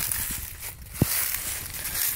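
Footsteps crunching and rustling through dry fallen leaves, with a single short knock about a second in.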